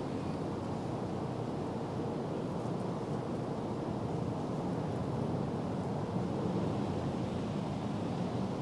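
Steady, low outdoor background noise on a golf green with no distinct events, the hush while a putt is lined up.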